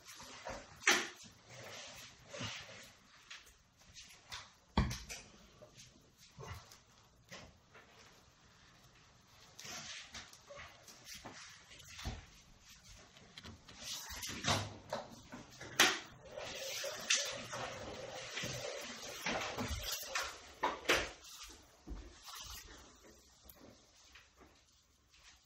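Scattered light knocks and clicks, irregularly spaced, with quieter rubbing and handling noise between: hands and a plastic washing-up liquid bottle being handled on a stone worktop.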